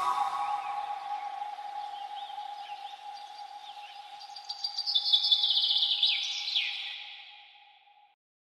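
Closing fade of a remix: after the beat drops out, one held tone carries on under high, short chirps that bunch up and get louder about five seconds in, then everything fades to silence near the end.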